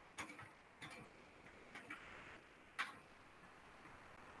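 Four short, sharp clicks at uneven intervals over a faint steady hiss, the last one the loudest.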